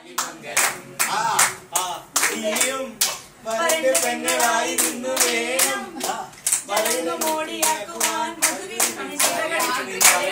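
Several people clapping along in a rhythm, about two to three claps a second, while a voice sings over the clapping.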